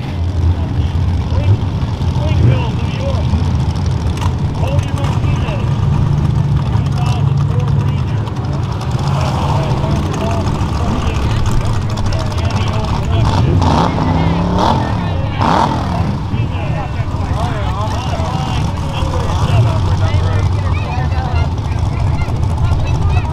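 Race truck engines running at a dirt track, with an engine revving up briefly about fourteen seconds in, under background voices.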